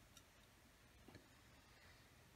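Near silence: room tone with a couple of very faint ticks.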